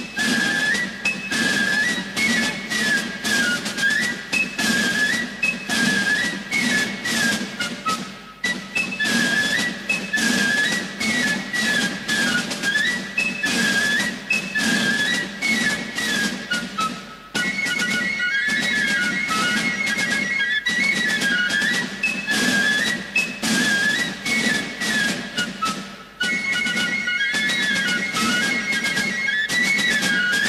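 Military fife-and-drum band playing a march: fifes carry a high melody over a steady drumbeat, with brief breaks between phrases.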